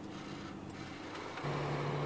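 Snowplow truck's diesel engine running steadily, heard from inside the cab, over a faint road noise; about one and a half seconds in its hum drops in pitch and gets louder.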